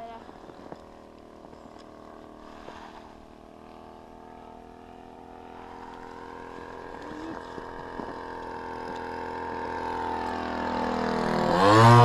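Two-stroke 45 cc Husqvarna chainsaw engine of a model airplane droning steadily in flight. It grows louder as the plane approaches and is loudest near the end as it passes low overhead, its pitch starting to drop as it goes by.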